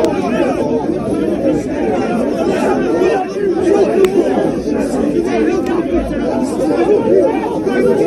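Loud babble of many men's voices talking over one another in a tightly packed crowd.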